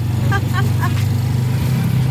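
Motorcycle engine of a tricycle (a motorcycle with a passenger cab) running steadily while under way, a constant low drone heard from inside the passenger cab.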